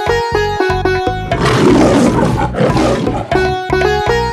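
Instrumental backing music with a steady beat and plucked-string notes, interrupted in the middle by a cartoon lion roar sound effect lasting about two seconds.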